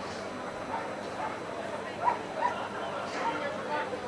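A dog giving short whimpering yips: the two loudest come close together about two seconds in, and a few more follow near the end, over background chatter.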